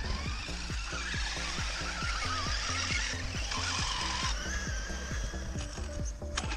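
RC truck's electric motor and drivetrain whining, the pitch wavering up and down with the throttle, over background music with a steady beat. The whine stops about four seconds in.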